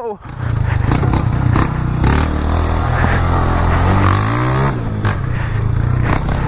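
A 160 cc single-cylinder motorcycle engine running under load on a loose-sand trail. The revs climb from about three seconds in and drop back just before five seconds.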